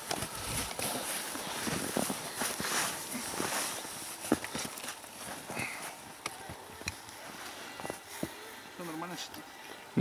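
Scattered wooden knocks and scuffs as a beehive is closed up and its snow-covered roof set back in place, with footsteps in snow. A brief low voice sounds near the end.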